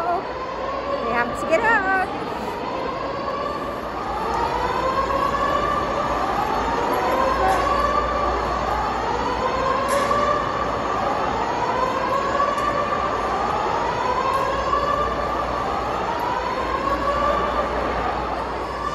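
Mall fire alarm sounding its evacuation signal: a rising electronic sweep tone, repeated about every two seconds, starting a few seconds in.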